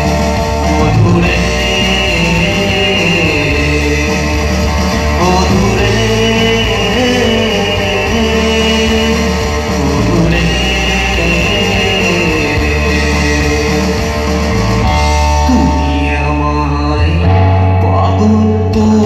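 Live band performing a Bengali song through a PA: a male singer with guitar and keyboard over a steady bass line.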